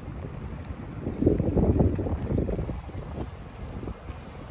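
Wind buffeting the microphone of a camera carried on a moving bicycle: a low, rumbling rush, with a stronger gust about a second in that lasts a second or so.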